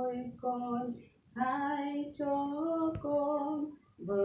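A woman singing a worship song unaccompanied, holding long steady notes, with a short pause for breath about a second in. A small click about three seconds in.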